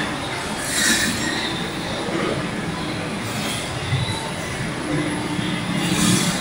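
Rotary kiln plant running: a loud, steady mechanical noise with faint steady whines over it, and a brief hiss about a second in.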